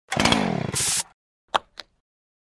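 A harsh, grinding intro sound effect lasting about a second, with several tones sliding downward and a hiss at the end, followed by two short clicks.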